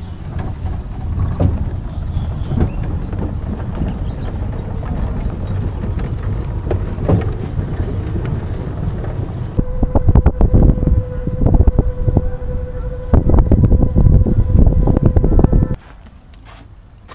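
An open-sided shuttle cart driving along, with a rough low rumble of wind buffeting the microphone. About ten seconds in the rumble turns louder and gustier and a steady whine joins it, until both cut off just before the end.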